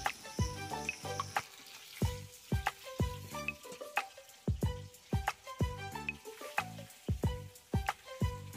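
Pieces of pona fish (young carp) sizzling as they fry in oil in a steel karai, under background music with a steady beat.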